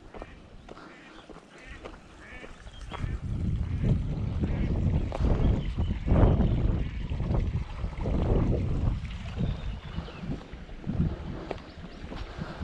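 Birds calling outdoors, with wind rumbling on the microphone from about three seconds in.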